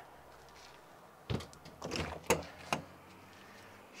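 Latches on a fifth-wheel RV's exterior pass-through storage compartment door being released and the door swung open: about four short clicks and knocks, starting about a second and a half in.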